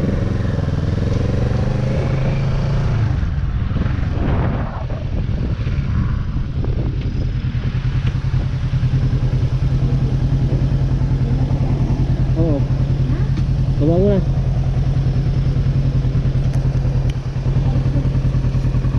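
Kawasaki Z-series motorcycle engine running at low revs as the bike rolls slowly and comes to a stop, then settling into an even, pulsing idle.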